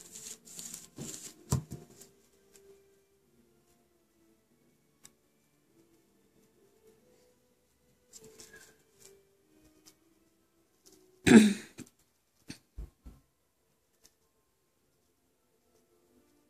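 Light handling noise: soft rustling in the first couple of seconds, then one loud short knock about eleven seconds in, followed by a few small clicks.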